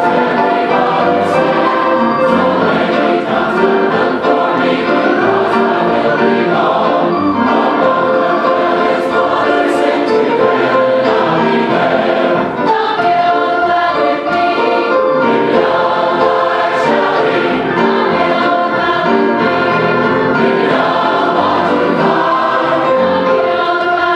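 Large mixed choir singing a gospel song in full voice, with piano accompaniment.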